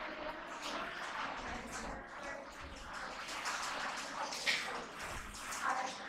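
Indistinct background murmur of faint voices over steady room noise, with no clear words.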